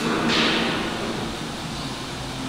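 Industrial workshop background noise: a steady low machinery hum under a hiss that swells shortly after the start and fades away over the next second.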